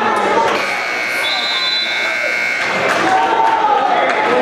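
Gymnasium scoreboard buzzer sounding one steady tone for about two seconds, marking the end of a wrestling period, over crowd shouting.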